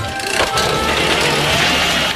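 Cartoon sound effect of a lever being pulled with a short clunk, then several chainsaws running together with a steady engine noise, over background music.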